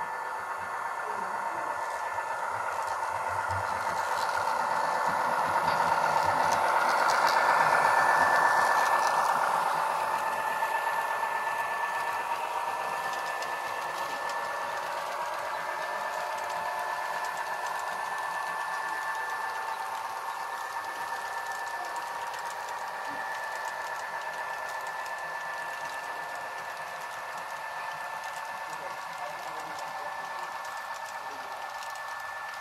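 A model freight train running on layout track: a steady small-motor whine from the model locomotives, with the wheels rattling over the rails. It grows loudest as the locomotives pass about eight seconds in, then eases as the freight cars roll by.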